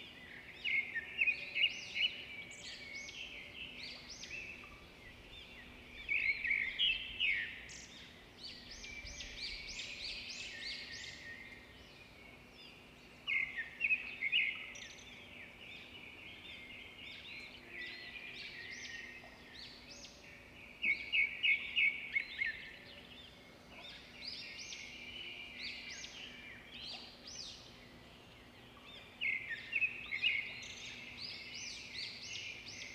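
Bird calls: bursts of rapid, high chirps, each a second or two long, repeated every several seconds over a faint steady hum.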